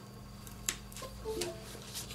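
A sharp click as a USB plug is pushed into an ESP32 development board, followed about a second in by a short, soft run of a few quick notes: the computer's USB device-connected chime.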